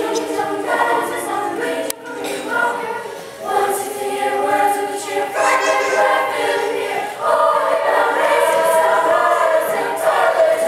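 Middle school chamber choir of girls' voices singing together in sustained phrases, with brief breaths between phrases about two, three and seven seconds in.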